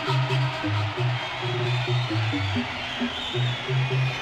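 Electronic dance music from a DJ mix played on a Pioneer DJ controller, driven by a bass line of short low notes stepping up and down with a higher line of short notes above it.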